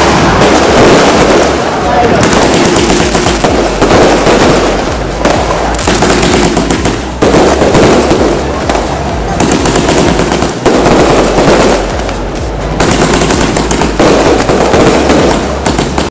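Aerial fireworks going off in rapid, dense volleys of bangs and crackles, loud throughout with brief lulls.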